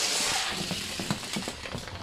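Four die-cast toy cars rolling down a plastic race track: a steady rolling rush that fades over the first second or so, then a scatter of light clicks and knocks as the cars run on toward the rocks.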